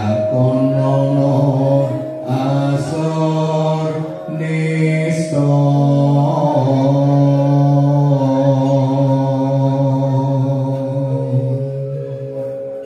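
A man singing Javanese tembang macapat solo into a microphone, in long drawn-out held notes at a slow pace with short pauses for breath.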